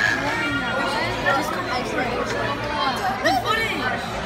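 Several people talking over one another in indistinct chatter, words not clearly made out.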